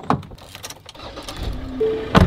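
A click from a car's rear door being handled, then the low rumble of the car's engine idling from about a second in, started early to cool the car in the heat.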